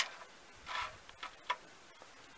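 Small metal clicks and taps from fitting a pin through the mower deck's linkage rod bracket: a sharp click at the start, a brief scrape, then two light ticks.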